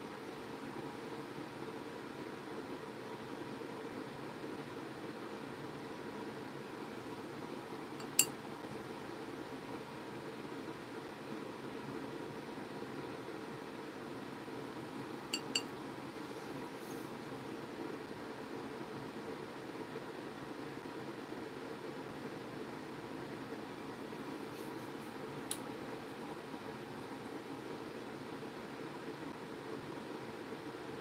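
Steady room hum broken by a few light, sharp clinks of a paintbrush against a pan watercolour palette: one about eight seconds in, a quick double clink midway, and a fainter one near the end.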